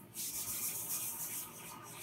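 Whiteboard eraser rubbing across a whiteboard, wiping off a marker drawing: a dry scrubbing hiss in quick strokes that eases off in the last half second.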